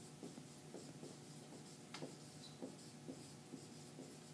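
Dry-erase marker writing on a whiteboard: a faint run of short strokes and taps as letters are written, with one sharper tick about two seconds in.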